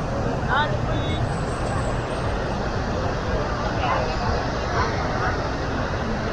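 Beach-crowd chatter: scattered voices of nearby people come and go over a steady low rumble.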